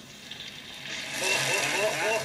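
Dried rice-stick noodles hitting hot oil in a wok, hissing and crackling as they puff up. The sizzle swells loudly about a second in, with voices over it.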